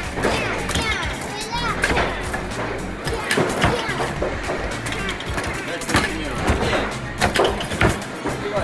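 Padded mallet thumping at irregular intervals on the pop-up figures of a Batman-themed whack-a-mole arcade game. The game's electronic music and sound effects and children's voices play underneath.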